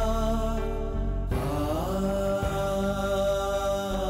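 Background score of sustained, held chords over a low drone, moving to a new chord about a second and a half in.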